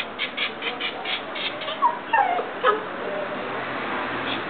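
A West Highland White Terrier whining and yipping: a quick run of short, sharp sounds in the first second and a half, then a couple of short falling whimpers about halfway through.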